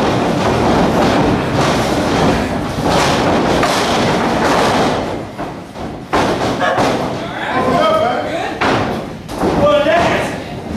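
Thuds of wrestlers' bodies hitting the canvas of a wrestling ring, mixed with shouting voices. A sharp thud comes about six seconds in, followed by loud voices.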